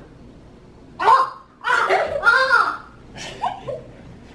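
A young person's loud, wordless vocal outburst: a sharp cry about a second in, a longer stretch of sliding-pitch sounds, then two short cries near the end, the kind of noise made in reaction to a bad-tasting drink.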